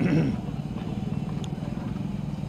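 An engine running steadily, a low hum with a fast even pulse.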